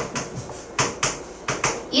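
Marker writing on a board: its tip strikes and slides across the surface stroke by stroke, giving an uneven string of sharp taps, several in quick pairs.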